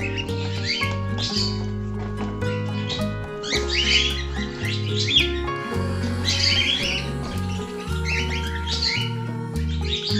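Background music with steady held notes, with bursts of high bird chirping over it about four times.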